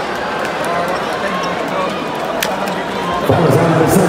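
Basketball arena crowd noise: a steady murmur of many spectators, with loud voices rising out of it about three seconds in.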